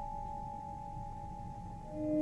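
A steady ringing tone with two pitches, one higher and one lower, fading away shortly before the end.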